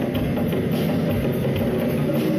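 Live percussion music: djembes and a drum kit playing a steady, driving rock groove together, with pitched notes sounding underneath.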